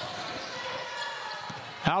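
A basketball being dribbled on a hardwood gym floor over steady crowd and gym noise.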